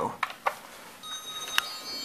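Short clicks as the elevator's hall call button is pressed. About a second later an electronic chime of several steady high tones sounds from the Otis Gen2 elevator and carries on to the end.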